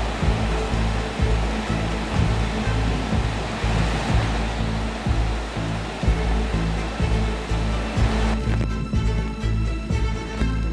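Background music with a steady low beat, over a steady rushing noise of typhoon wind and heavy rain. The storm noise drops away about eight seconds in, leaving the music.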